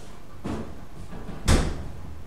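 A light knock about half a second in, then a washer or dryer door banged shut with one sharp bang about a second and a half in.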